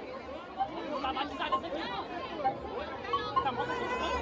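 Crowd of many people talking over each other, a mix of overlapping voices with no single speaker standing out.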